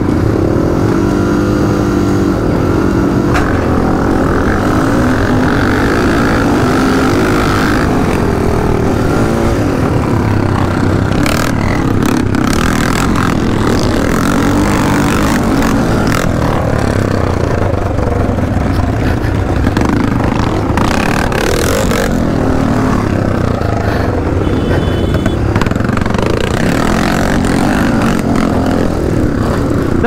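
Honda XR600R single-cylinder four-stroke dirt bike and the surrounding field of vintage motocross bikes pulling away from the start, engines rising in pitch as they accelerate. They then run hard under load over the rough track, with a few sharp knocks from the bumps.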